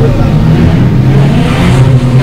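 Rear-wheel-drive dirt rod race cars' engines running hard on a loose, muddy dirt track: a loud, steady drone of several overlapping engine notes.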